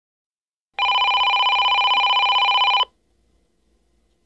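One electronic telephone ring, a trilling tone lasting about two seconds that starts a little under a second in and cuts off sharply.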